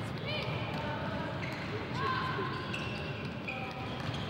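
Basketball game in a sports hall: the ball bouncing, footsteps on the court floor, and several short high sneaker squeaks, with players' voices underneath.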